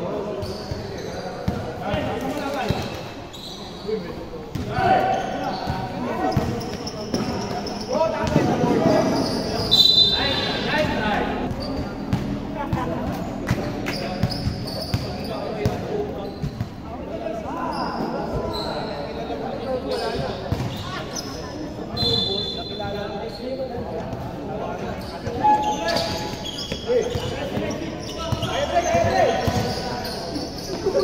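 A basketball being dribbled and bouncing on a hard indoor court, with players' voices and calls echoing in a large hall. A brief high-pitched squeal cuts through twice, about ten seconds in and again past the twenty-second mark.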